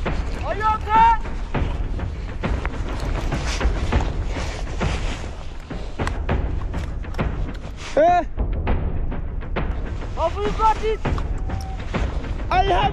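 Wind rumbling on the microphone with rustling handling noise, broken by short shouted calls from people three times: about a second in, near eight seconds, and around ten and a half seconds.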